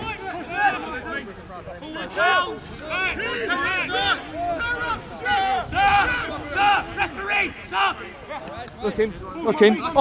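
Several high-pitched voices shouting and calling over one another, with crowd babble behind them.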